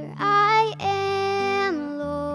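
A young girl singing a hymn to her own acoustic guitar: a short note, then a longer held note that slides down near the end, over sustained guitar chords that change about a second in.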